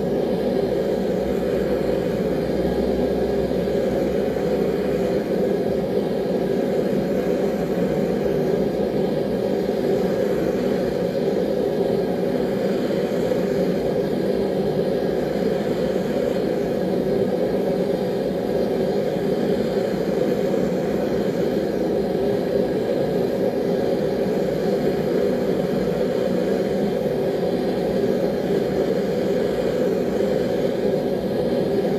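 A forge running with a steady, unchanging noise while knife blades heat in it toward hardening temperature, just short of going non-magnetic before an oil quench.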